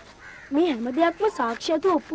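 A boy speaking in a conversation, starting about half a second in.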